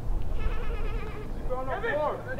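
Several voices shouting and calling out during a soccer match, faint at first and louder from about one and a half seconds in.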